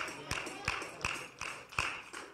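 A steady rhythm of short, sharp taps, a little under three a second.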